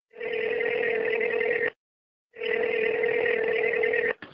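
A telephone ringing twice, each ring about a second and a half long with a short pause between.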